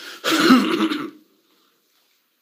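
A man clearing his throat hard into a tissue held at his mouth, one rough burst lasting about a second, then silence.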